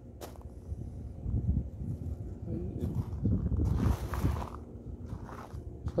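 Footsteps crunching irregularly on gravel as the person filming walks, with rumble and rubbing from the handheld phone's microphone. A louder scraping stretch comes just past the middle.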